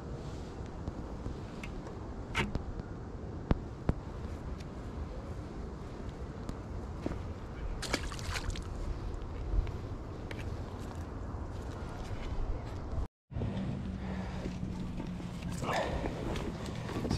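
A small bass dropped back into shallow creek water with a brief splash about halfway through, over a steady low rumble with a few light clicks.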